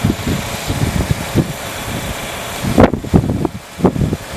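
Wind buffeting the microphone: a steady rushing hiss with irregular low rumbling gusts, the strongest a little under three seconds in.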